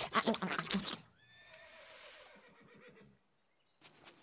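A horse whinnying in a quick run of neighing pulses for about a second, then quiet with a few faint soft sounds.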